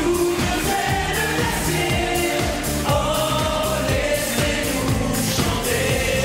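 Several singers singing a pop song together in chorus, backed by a band with a steady beat.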